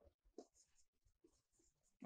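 Faint scratching of a marker writing on a whiteboard.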